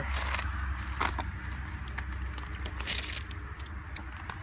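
Crunching footsteps on gravel and dry leaves, with scattered crackles and clicks, over a steady low hum.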